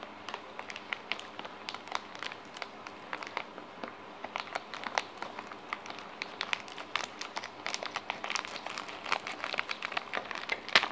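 Scissors cutting into a plastic biscuit packet: a run of crisp snips and crinkling of the wrapper, coming thicker from about halfway through.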